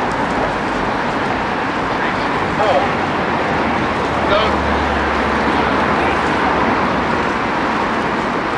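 Steady outdoor background rumble and hiss, with brief faint calls twice, about a third of the way in and just past halfway.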